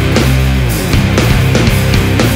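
Heavy rock song played loud by a full band, with electric guitars and bass over a steady, driving drum beat.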